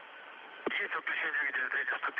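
Hiss of an open, narrow radio channel, then a voice talking over the Soyuz-to-ground radio link from a little under a second in.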